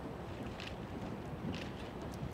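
Low, steady wind rumble on an outdoor microphone, with a couple of faint short hissy sounds about half a second and a second and a half in.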